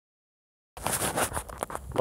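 Silent for the first three-quarters of a second, then irregular rustling with a few light clicks and knocks, typical of a handheld phone being moved about as it records.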